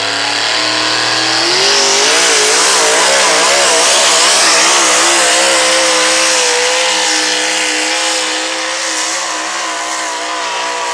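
Pickup pulling truck's engine at full throttle, dragging a pulling sled down the track. The revs climb about a second and a half in, waver up and down for a few seconds, then hold high and steady.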